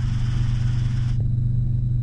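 Steady low drone of a piston-engine helicopter's engine and rotor, heard from inside the cockpit. About a second in, the hiss above the drone cuts off abruptly and only the low drone remains.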